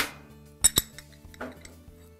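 Metal gas range burner caps clinking together as they are lifted off the cooktop and stacked in the hand: two quick sharp clinks, under a second in, over steady background music.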